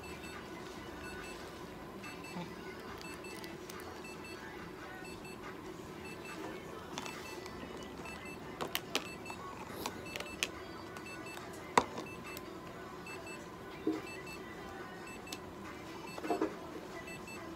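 Steady low room hum with a faint, regularly repeating electronic beep pattern. About halfway through come a few sharp plastic clicks and taps as food is worked in a small plastic cup and syringe, the loudest a little before the end.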